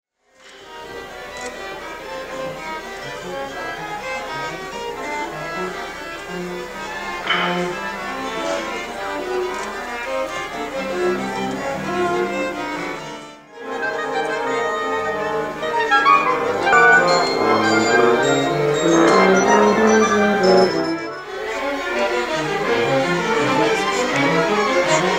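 Orchestra with the strings to the fore playing a classical piece. The music breaks off briefly twice, about halfway through and near the end, and is louder in the second half.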